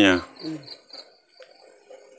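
A short run of high insect chirps, about six quick pulses within the first second, after a loud spoken 'eh' at the very start.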